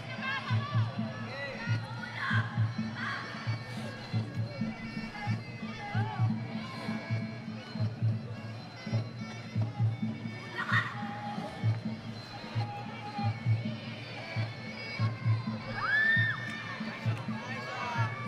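Traditional Muay Thai ring music (sarama): a reedy, bagpipe-like pipe over a steady beat of drums. Crowd voices and shouts sound over it.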